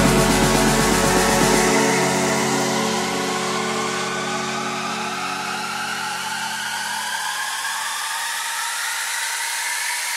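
Progressive techno breakdown: the bass drops out about two seconds in, leaving sustained synth chords under a rising noise sweep that builds steadily.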